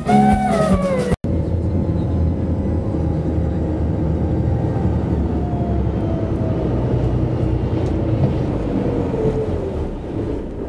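Live band music that cuts off abruptly about a second in, followed by the steady low drone of a passenger boat's engines heard from inside its cabin.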